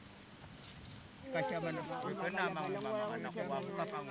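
A person's voice, not the English narration, comes in about a second and a half in, over a quiet outdoor background.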